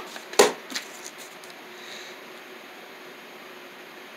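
One short knock about half a second in and a few faint ticks, then steady low hiss of room tone.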